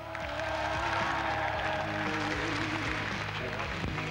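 Audience applause mixed with music.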